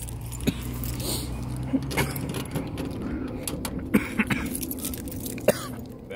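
A bunch of keys jangling in a hand with footsteps, giving scattered light clinks. A low steady hum runs underneath and stops about two seconds in.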